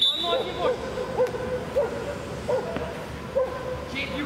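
A referee's whistle blast at the very start, a single steady high note lasting under a second, halting play. After it come short repeated calls about once every half to one second, over the open-air noise of the pitch.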